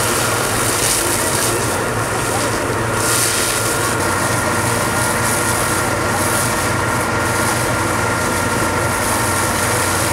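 An engine runs steadily at one constant speed while water jets from fire hoses hiss onto the burning hay.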